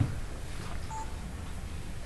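Hushed concert-hall room tone with a low rumble as the orchestra waits for the downbeat, broken by one short high beep about a second in.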